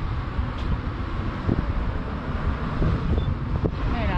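Wind buffeting the microphone over road traffic: an uneven low rumble with a light hiss above it.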